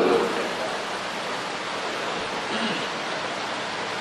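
Steady, even hiss of background noise with no clear pitch.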